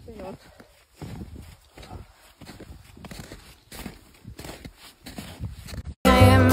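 Steel camping mug hanging from a backpack, clinking against the pack at every stride while running, with footfalls in snow, in a quick, uneven rhythm.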